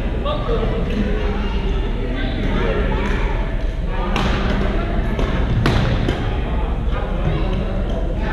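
Badminton rackets striking shuttlecocks in a large gymnasium hall, with two sharp cracks about four and five and a half seconds in and a few softer hits, over the steady hubbub of people talking on the courts.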